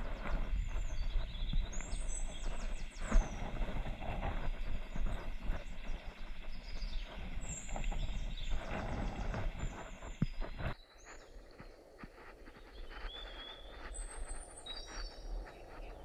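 Scraping, knocking and rustling of hands and body on wooden ladder rungs nailed to a tree, picked up close on a body-worn camera during a climb, with small birds chirping high over it. The handling noise stops suddenly about eleven seconds in, leaving the bird chirps over a quieter background.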